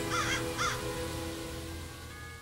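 A crow cawing twice in quick succession near the start, over a sustained, held music underscore.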